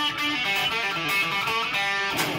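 Hollow-body electric guitar playing strummed chords that ring on, the chord changing every half second or so.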